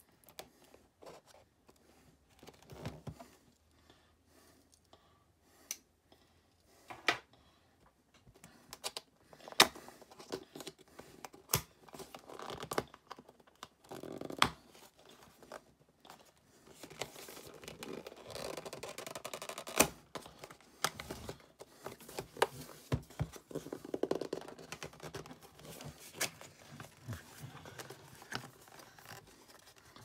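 A cardboard box being cut and pried open by hand: a thin metal tool scraping along the sealed flaps, paperboard tearing and rubbing, with scattered clicks and taps as the box is handled. The scraping and tearing get longer and busier in the second half.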